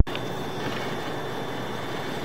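A click as the sound cuts in, then a steady, even mechanical noise with a faint thin high whine above it.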